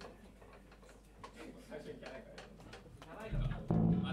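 A rock band's electric guitar and bass guitar sounding briefly through amplifiers amid talk in the room, with a loud low note struck twice near the end.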